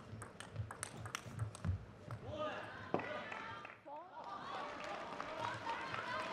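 Table tennis rally: the celluloid-type ball clicks sharply off the rackets and table in quick strikes for about two seconds. The point then ends and voices take over for the rest, with one more click a second later.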